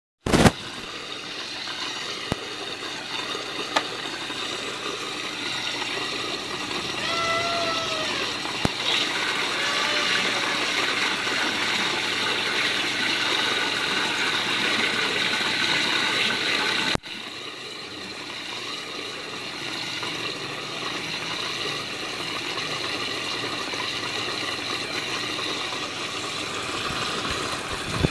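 Water running steadily in a hydroponic reservoir system, a continuous rushing with a few sharp clicks early on. It drops in level suddenly about two-thirds of the way through and carries on.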